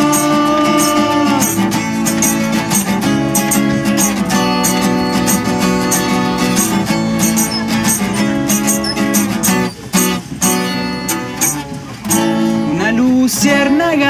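Acoustic guitars strumming chords in a live unplugged song, in a passage without lyrics. The strumming thins out briefly a little past halfway, and a voice comes back in near the end.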